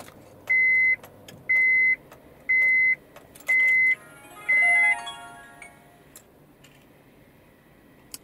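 Electronic beeps at one steady pitch, about one a second, five in a row. Near the fifth beep a short startup chime of tones stepping down in pitch plays as the Toguard CE80B mirror dash cam powers on.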